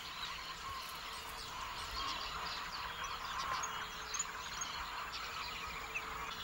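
Faint open-country ambience: scattered small bird chirps over a steady high hiss.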